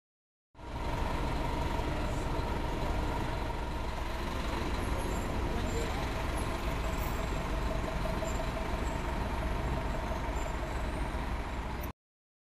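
Steady city street traffic noise: a low rumble with a faint held whine, starting after half a second of silence and cutting off just before the end.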